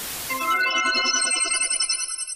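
TV static hiss that cuts off about half a second in, followed by a short electronic outro jingle of bright, quickly pulsing electronic tones.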